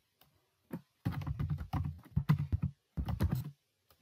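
Computer keyboard being typed on, several quick runs of keystrokes with short pauses between them.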